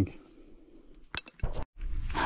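A few quick, light metallic clinks about a second in, small metal pieces knocking together.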